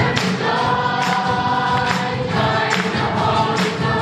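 Church choir singing a worship song with musical accompaniment.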